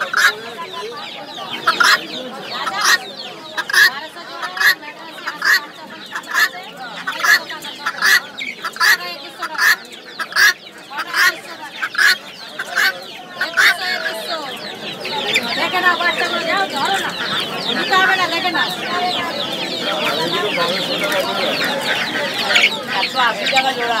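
Chickens clucking: a steady run of short, sharp clucks about two a second, then from about fourteen seconds in a denser, busier mix of many birds clucking together.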